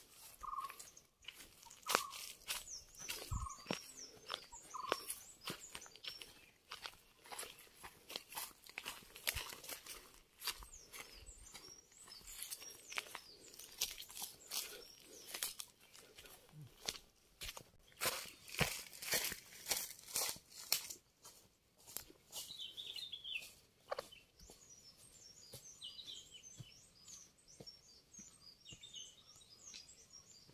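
Footsteps crunching irregularly through dry leaves and twigs on a dirt path, thickest through the middle and thinning out after about 21 s. Birds call throughout: a short call repeated about once a second in the first few seconds, and high chirping in the last third.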